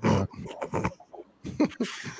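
Laughter in a run of short, breathy bursts, loudest at the start.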